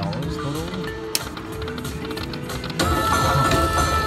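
Slot machine's electronic game music and sound effects as a free-game spin runs and the reels land, with a click about a second in. The sound gets louder, with a new held tone, near the end as the reels settle.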